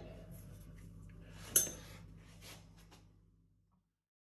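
A hand tool clinking on metal at the lathe's collet chuck: small faint clicks, then one sharp clink about one and a half seconds in, over a low steady hum that fades out near the end.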